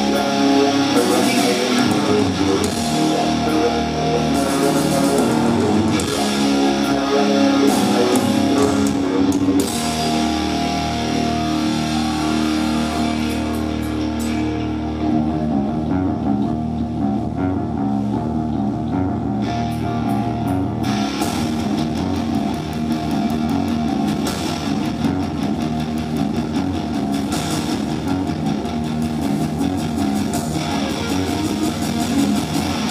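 A hard rock band playing live: distorted electric guitar, bass and drum kit through a loud PA. For about ten seconds midway the cymbals and drums fall away under a held low note, then the full band comes back in.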